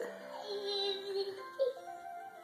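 Music from a children's programme playing on a television: a melody with one long held note in the middle.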